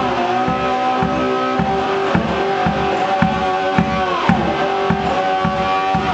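Homemade wine box guitar played slide-blues style: sustained notes with a downward slide about four seconds in. A low thump keeps a steady beat about twice a second under it.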